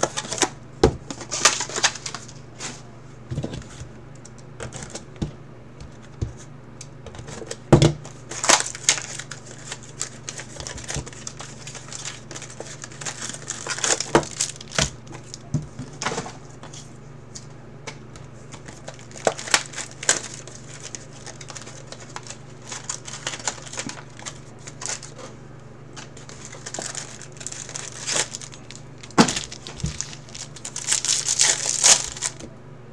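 Cardboard trading-card box and foil card packs being handled: irregular crinkling of the foil wrappers, with cardboard taps and scrapes. A steady low hum runs underneath.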